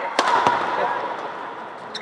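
Badminton racket smashing a shuttlecock: one sharp crack just after the start, then a duller knock. A lighter hit comes near the end as the shuttle is returned, over a murmur of spectators.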